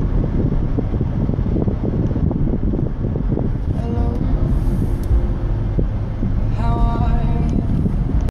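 Steady low road and engine rumble inside a moving car's cabin, with a child's voice heard briefly about four seconds in and again near seven seconds.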